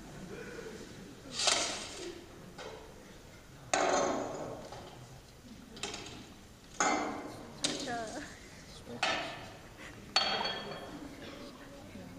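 Kitchen items set down one after another on a stone countertop, making a series of sharp knocks and clinks, about seven or eight spaced a second or so apart. They are heard as a film soundtrack played through theatre speakers.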